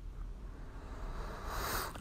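Faint room noise, then an audible breath drawn in near the end, just before speaking.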